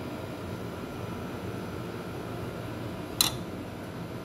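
Steady room hum in a kitchen, with a single sharp tap about three seconds in from the hands at work spooning meat filling onto fatayer dough.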